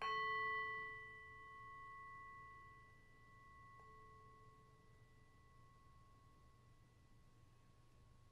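Singing bowl struck once, its several tones ringing on and fading slowly away.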